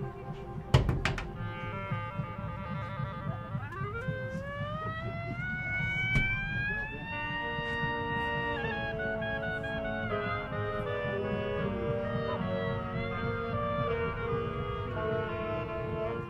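Marching band playing on the field: a few sharp percussion hits about a second in, then a long upward glide in pitch that settles into sustained held chords.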